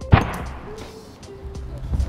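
A heavy stone block dropped onto a bicycle helmet on packed dirt: one sharp thud just after the start that dies away quickly. It is the fifth strike in a helmet crash test, and the helmet still holds. Faint background music runs underneath.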